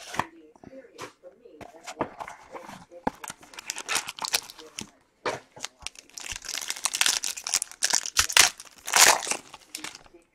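Clear plastic shrink-wrap being torn off a box of trading cards and crumpled in the hands, crackling in quick bursts that grow dense in the last few seconds.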